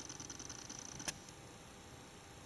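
Faint room noise with a thin high hiss that cuts off at a single sharp click about a second in.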